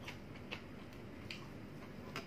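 Chewing a mouthful of food, with three sharp wet mouth clicks.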